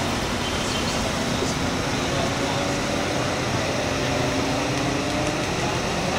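A car engine running steadily under a constant outdoor background noise, with faint voices in the background.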